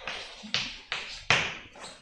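Chalk writing on a blackboard: about four sharp taps and short scratchy strokes as words are written.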